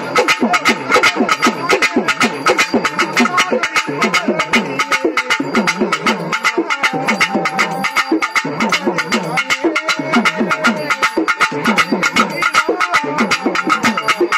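Fast, continuous drumming on Tamil pambai ritual drums, many strokes a second, with repeated bending drum tones under a steady high ringing tone.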